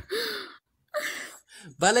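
A young woman's voice in short spoken bursts with brief pauses between them.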